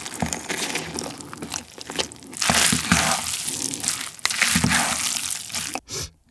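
Chopsticks mixing naengmyeon noodles through a thick spicy sauce in a bowl: a wet, sticky stirring noise with many small clicks, louder in two stretches in the middle and near the end.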